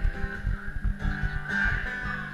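Acoustic guitar strummed in an instrumental passage of a live country-pop song, with a low beat thumping several times a second underneath.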